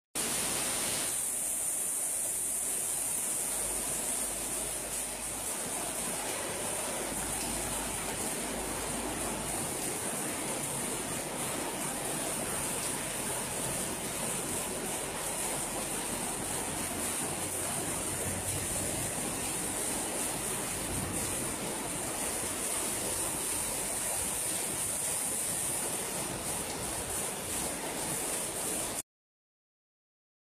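Floodwater rushing along a street: a steady, unbroken rush of water noise.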